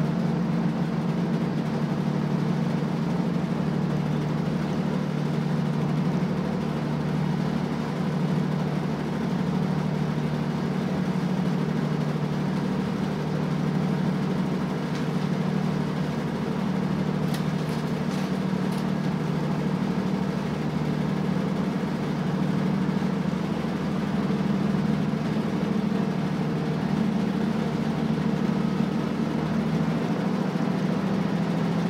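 Cabin interior of a JR Shikoku KiHa 185 series diesel railcar under way: the underfloor diesel engine drones steadily along with the running noise of the train. Its level and pitch hold steady, as at an even cruising speed.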